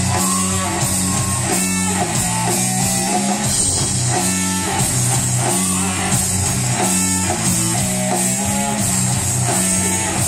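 Live rock band playing an instrumental passage: electric guitar over a drum kit, at a steady loud level throughout.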